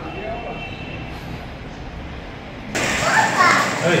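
A low steady hum, then about three seconds in a sudden cut to a young child's voice speaking loudly and close.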